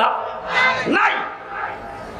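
A man's raised, drawn-out voice, amplified through microphones, sweeping sharply up in pitch about a second in and then dropping away quieter.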